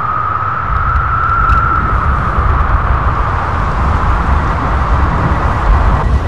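A loud, steady rumbling noise effect that opens the track. A heavy low rumble sits under a hissing band, sounding like a vehicle or aircraft, with no instruments or voice yet.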